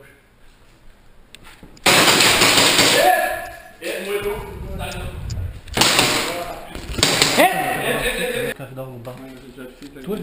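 Two loud bursts of airsoft gunfire at close range, the first about two seconds in and lasting just over a second, the second around six seconds in and running on for about two seconds, each followed by shouting.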